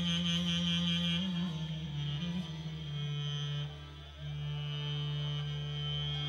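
Bulgarian wedding-band music: a clarinet plays a wavering, ornamented melody over sustained low accordion chords. The music dips briefly about four seconds in, then carries on with long held notes.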